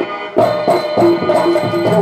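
Traditional Tamil stage-drama accompaniment: tabla and hand drums strike a steady, even rhythm over held, sustained notes. After a brief lull the drums come in about a third of a second in.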